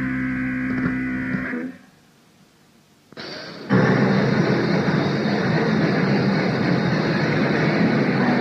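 Lo-fi cassette recording of a punk band rehearsing. A held chord rings and stops about one and a half seconds in, followed by a short gap of tape hiss. The band then comes back in loud and distorted about three and a half seconds in, starting the next song.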